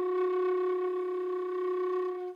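Solo silver concert flute holding one long, steady note in its low register.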